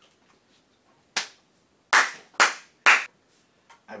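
Four sharp hand claps: a single clap about a second in, then three more about half a second apart.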